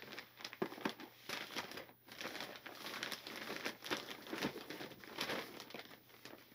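Plastic bag and packaging crinkling irregularly as items are rummaged through and handled.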